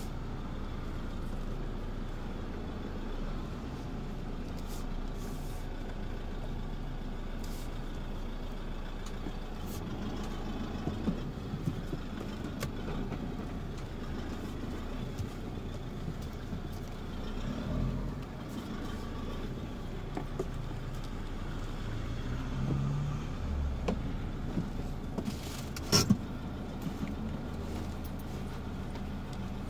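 Car engine and road noise at low speed, heard from inside the cabin as a steady low rumble. A few light clicks come through, and a sharp knock near the end.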